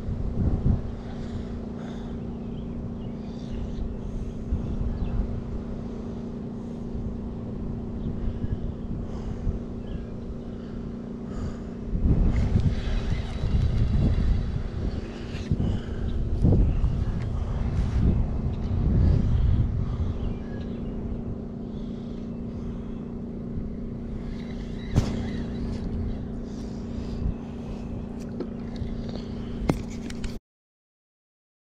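A steady mechanical hum from an unseen motor, with gusts of wind buffeting the microphone from about 12 to 20 seconds in, and small clicks from a spinning reel being wound.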